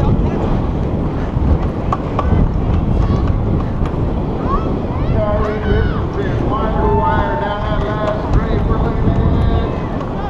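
Wind buffeting the microphone of a helmet-mounted action camera on a BMX rider riding fast down a dirt track, with a steady low rumble. Voices calling out can be heard faintly from about five seconds in to nine.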